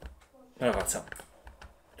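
A short spoken utterance, with a few faint clicks around it.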